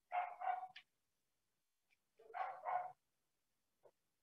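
A dog barking in pairs: two quick barks at the start and two more about two seconds later, faint over a video call's audio.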